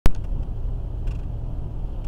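A sharp click at the very start, then a car's engine and tyre noise heard from inside the cabin while driving, a steady low rumble with a few faint ticks.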